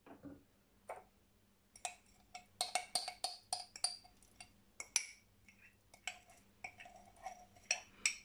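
Metal teaspoon scraping and clinking inside a glass jar of spice paste, the jar nearly empty: a few clicks at first, then a rapid, irregular run of sharp, ringing clicks from about two seconds in.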